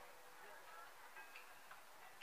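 Near silence: faint distant crowd voices, with a couple of light ticks.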